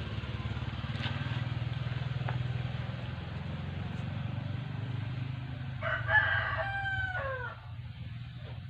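A rooster crows once, about six seconds in: a single call nearly two seconds long that drops in pitch at the end. A steady low hum runs underneath.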